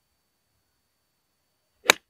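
A 50-degree wedge striking a urethane-covered Nitro Elite Pulsar Tour three-piece golf ball: one short, sharp click of impact near the end. The shot is one he says he "didn't hit very well".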